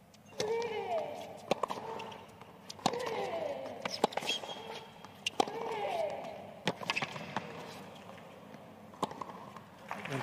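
Tennis rally on a hard court: crisp racket strikes on the ball about every 1.3 seconds. On every other shot a player lets out a grunt that falls in pitch, three times in all.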